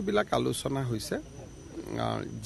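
Speech only: a man talking to reporters, with a short, quieter pause just after the middle.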